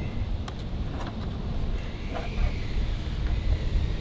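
Steady low outdoor rumble with a few faint, light clicks.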